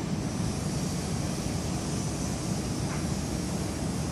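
Steady low rumbling noise of wind buffeting the microphone on an open rooftop, over the distant hum of a city.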